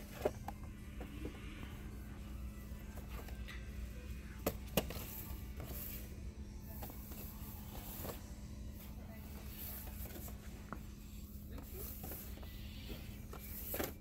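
Shop-floor ambience: a steady low hum with faint background music and voices, broken by a few sharp clicks and knocks from boxed vinyl figures being handled on the shelf, once just after the start and twice close together around the middle.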